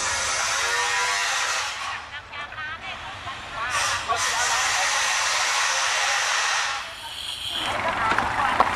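A loud, steady rushing noise that drops away twice, with brief voices heard in the quieter gaps.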